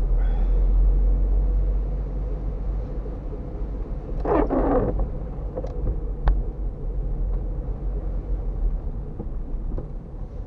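Low, steady rumble of a car driving slowly on a wet street, heard from inside the cabin, with a windshield wiper swishing once across the rain-spotted glass about halfway through. A single sharp click comes a little after six seconds in.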